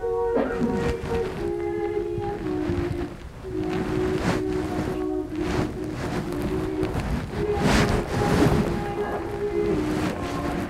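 A person singing a slow tune in long held notes that step up and down in pitch, with a few short bursts of noise.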